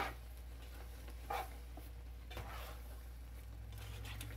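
Plastic slotted spatula stirring bowtie pasta in a thick cream sauce in a pan: faint wet squishing and scraping in a few brief strokes, over a steady low hum.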